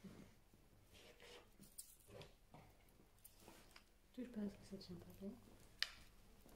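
Near silence in a small room: faint rustling and small clicks, with a soft voice briefly about four seconds in and a sharp click near the end.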